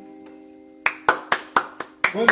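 An electronic keyboard's last held chord dies away, then sharp hand claps start a little before halfway through, evenly spaced at about four a second.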